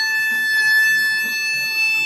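Harmonica playing one long held note, the tone shaped by both hands cupped around the instrument.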